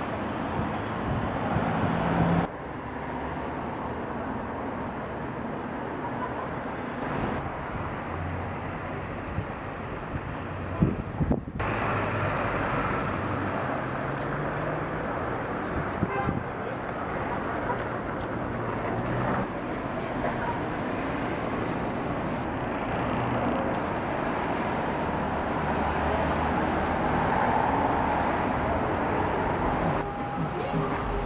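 City street traffic: cars and trucks passing on the road, with engine and tyre noise. The sound changes abruptly twice, about two and eleven seconds in.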